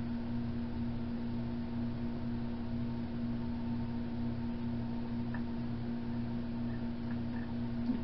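A steady low background hum holding one pitch, with a single faint click about five seconds in.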